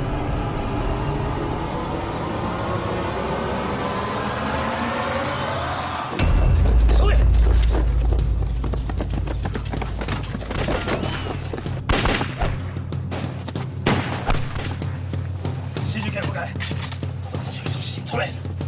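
Tense dramatic music, then a loud deep boom about six seconds in, followed by scattered rifle shots as a staged gunfight goes on, with the music underneath.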